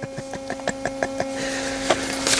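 Sheets of printed paper rustling as they are handled and flipped, with quick light ticks early on and a louder rustle near the end, over a steady electrical hum.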